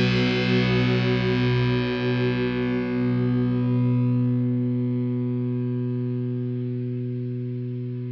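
An ESP H-100 electric guitar with Seymour Duncan JB humbuckers, tuned down to E-flat and played through Amplitube amp-simulator distortion, lets its final chord ring out. The distorted chord sustains, wavering slightly at first, then fades slowly.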